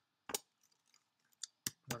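Computer keyboard keystrokes: a few separate sharp clicks with pauses between them as a short line of code is typed, the loudest a third of a second in and another near the end.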